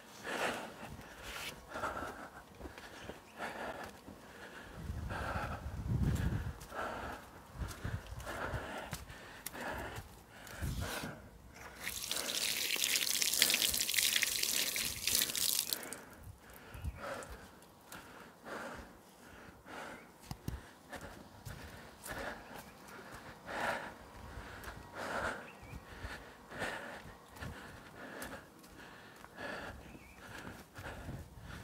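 Garden tap running for about four seconds, starting about twelve seconds in, as a freshly dug sweet potato is rinsed under it. Around it, faint scattered knocks and ticks.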